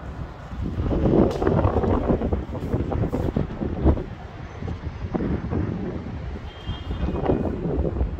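Wind buffeting the microphone in uneven gusts out on a high-rise balcony, a rough low rumble that swells and eases.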